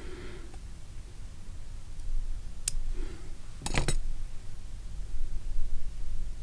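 Fly-tying scissors clicking: one sharp click about two and a half seconds in, then a short quick rattle of clicks a second later, over a low steady hum.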